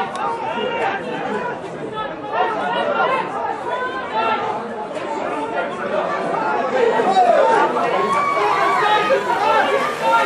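Many voices talking and calling out over one another at a rugby match, a steady babble with no single clear speaker.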